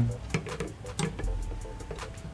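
A few light metallic clicks of needle-nose pliers on the steel presser-foot holder bolt of an overlock machine as the bolt is loosened, over faint background music.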